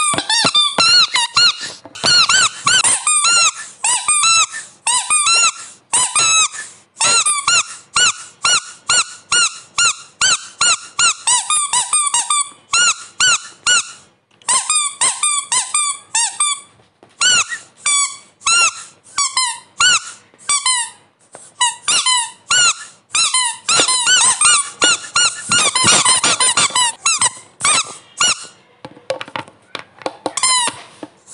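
A passage of an electronic music track built from short, high chirping sounds, each bending up and then down in pitch, two or three a second, with a few brief breaks.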